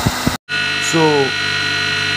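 A 2 hp electric motor running at idle with nothing on its shaft: a steady hum with several fixed whining tones above it. Before it comes in, the first half-second holds the noisier running sound of another motor, cut off abruptly.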